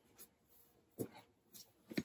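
Faint rustling of clothing with a few soft knocks as a person moves up close to the microphone, handling noise.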